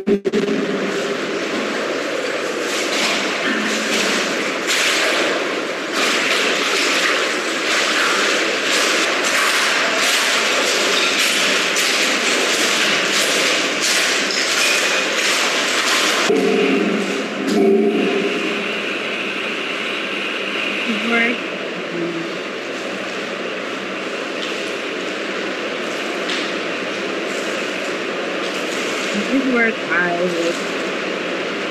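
Charcoal being crushed and ground with a wooden rolling pin on a tabletop: a dense, gritty crunching and scraping that eases a little after about sixteen seconds. It is heard as the soundtrack of a performance video played back over a video call.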